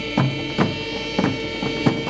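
Live band playing the closing bars of a song: a held chord with sharp drum strikes about two a second, the singing having stopped.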